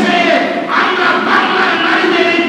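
Many men's voices chanting together in unison, a loud sustained group response.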